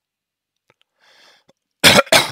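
A man's faint breath in, then a single sudden loud cough near the end.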